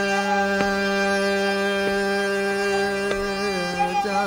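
Hindustani classical vocal music with harmonium and tanpura: one long steady held note that begins to bend and waver near the end, with faint strokes about every second and a quarter.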